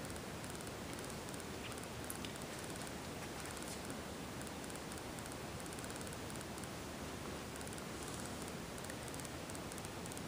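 Faint, steady hiss of room tone with no distinct events.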